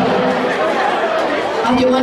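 A crowd of many people talking at once, voices overlapping in a steady hubbub.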